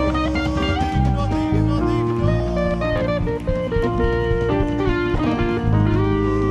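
Live worship band music playing an instrumental passage of held chords and notes between sung lines.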